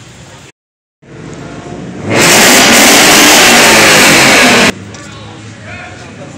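A car engine revving very close to the microphone, so loud that it overloads the recording for about two and a half seconds before cutting off sharply. Just before it there is a brief gap of silence in the audio.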